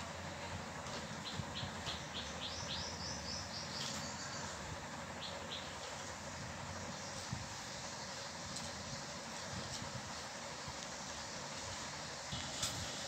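A bird chirping: a quick run of short, high notes that climb in pitch from about one to four seconds in, then two more notes a little later, over steady low background noise.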